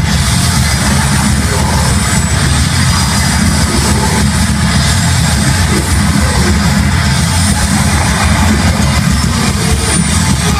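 A grindcore/hardcore band playing live: loud, distorted electric guitar, bass and drums in a dense, unbroken wall of sound, heavy in the low end, picked up by a phone's microphone in the audience.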